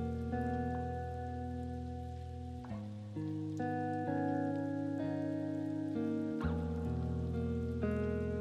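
Background music of soft, sustained chords, each held for a second or more before changing to the next.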